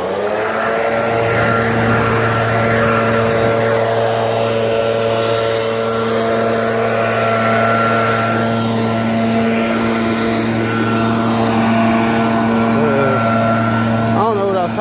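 Gas backpack leaf blower engine revving up in the first half second, then running steadily at full throttle with a rush of air.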